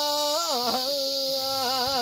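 A solo voice singing a traditional Japanese boatman's folk song in long held notes, with wavering ornamental turns about half a second in and again near the end.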